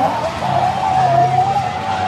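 A long, wavering high-pitched scream, held for nearly two seconds and then falling off, over a steady low hum.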